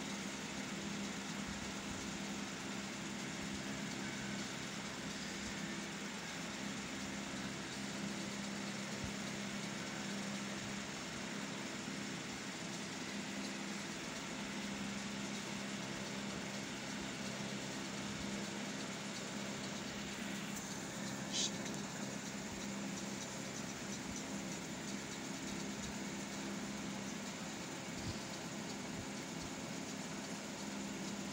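Steady low machine hum with a faint hiss, like a motor or fan running, unbroken throughout. One brief sharp click about three-quarters of the way through.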